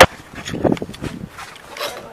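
Handling noise from a handheld camera: a sharp knock at the start, then scattered rubbing and knocking as it is jostled.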